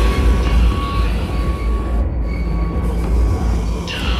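Brutal death metal played loud and dense: heavily distorted, down-tuned guitars and drums with no vocals. The top end thins out briefly about halfway, and a cymbal-like hiss swells in near the end.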